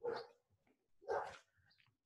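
A dog barking twice, faintly, about a second apart.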